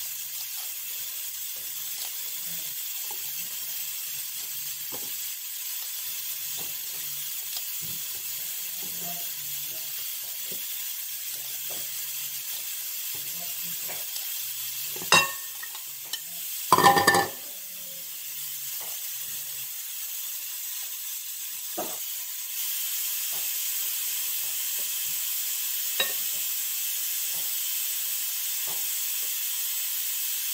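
Lettuce leaves being torn and handled by gloved hands over a ceramic plate, faint crackles over a steady hiss. About halfway through there is a knock and then a short, louder clatter as a bowl of lettuce is tipped out over the plate.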